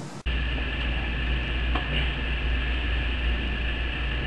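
An abrupt cut in the recording about a quarter second in, then a steady low hum with a hiss above it.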